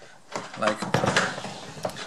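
Several knocks and scuffs of the plastic motor head of a Ridgid shop vacuum being handled and turned over.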